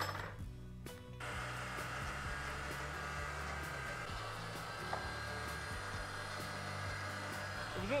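Electric meat grinder running steadily, mincing pork through its fine plate; the motor's hum sets in about a second in.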